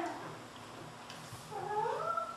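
A high-pitched voice-like call: a short downward slide right at the start, then a longer wavering call that bends up and down near the end.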